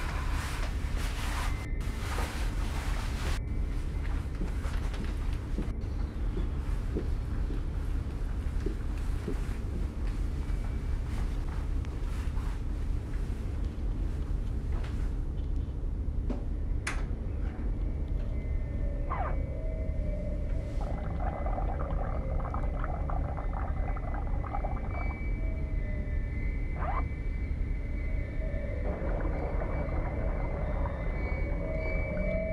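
Dark, droning horror-film score: a steady low drone throughout. In the second half, eerie sustained high tones and a trembling, shimmering layer come in.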